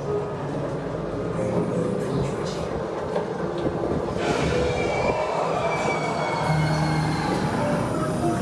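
Haunted-maze sound effects from speakers: a loud, steady rumble, joined about halfway through by a long, high screech that slides slowly down in pitch.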